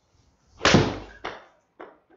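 A golf iron strikes a ball off an indoor hitting mat, one sharp loud hit that trails off, followed by two shorter, fainter knocks.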